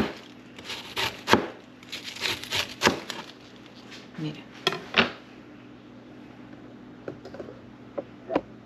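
Chef's knife slicing a head of raw cabbage into thin shreds on a plastic cutting board: a string of irregular crisp cuts, each ending with the blade hitting the board. The cutting stops about five seconds in, leaving only a couple of faint taps.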